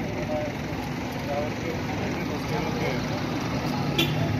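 Street ambience: a motor vehicle's engine running close by, getting a little louder toward the end, with indistinct voices in the background.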